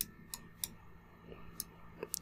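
Computer mouse and keyboard clicks: about four short, sharp clicks at irregular spacing, the first the loudest, over a faint steady hum.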